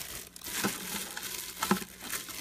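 Plastic baggie crinkling as it is rubbed around the inside of a stainless steel Instant Pot inner pot, wiping coconut oil onto the metal, with two light taps.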